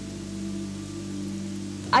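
Background music of sustained low notes over a steady rushing hiss of floodwater.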